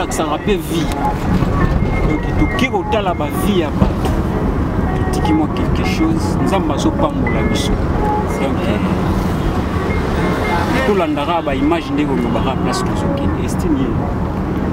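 Steady low rumble of a car heard from inside the cabin, under voices talking.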